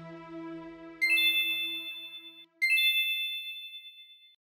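A bright chime sound effect rings twice, about a second and a half apart, each ding dying away slowly. Soft background music fades out underneath the first ding.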